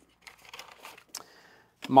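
Faint rustling as a fabric accessory pouch holding lens modifiers is handled, with a small click about a second in.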